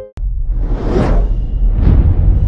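Logo-intro sound effect: a deep steady rumble with two whooshes, one swelling to a peak about a second in and a second near the end. It follows a sudden cut-off of plucked harp-like music right at the start.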